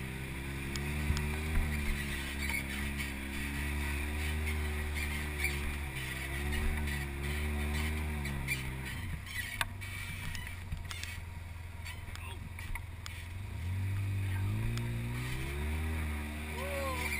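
Side-by-side UTV engine running under load on a rough trail, its pitch rising and falling with the throttle, with scattered knocks from the bumpy ground. About nine seconds in the engine note drops away for a few seconds, then picks up again near the end.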